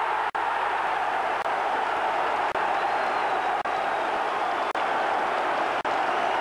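Football stadium crowd cheering and applauding a goal, a steady mass of voices and clapping.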